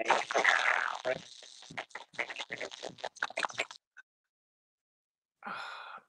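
Live-stream audio breaking up over a failing Wi-Fi connection: a noisy garbled burst, then rapid crackling stutters, then the sound cuts out completely for over a second.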